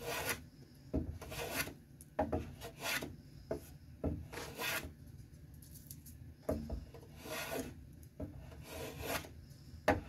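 Hand plane shaving a light wood strip flush with a cedar board: repeated short scraping strokes of the blade along the wood, about one a second, with a pause of a second or so near the middle.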